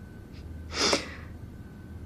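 A single short, sharp breath, heard about a second in over faint room tone.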